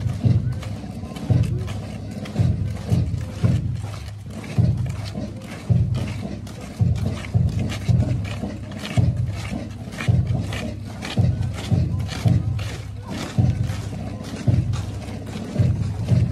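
March music with a steady beat, a strong low pulse about once a second, over the footsteps of many cadets marching in step on a dirt road.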